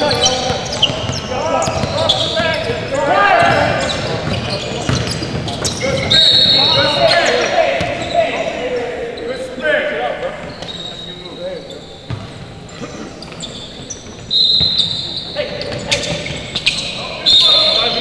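Basketball game in a large echoing gym: a ball bouncing on the hardwood floor, shoes squeaking and players' voices calling out. A few short, shrill blasts of a referee's whistle cut in, about six seconds in and twice near the end.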